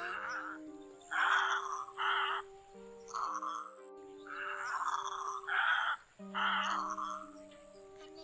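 Harsh, croaking egret calls, repeated about once a second, over background music with long held notes.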